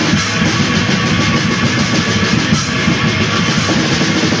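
Raw black metal played loud: distorted guitars over fast, dense drumming, with no break.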